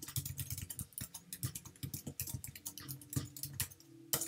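Quick typing on a computer keyboard: a fast, uneven run of key clicks.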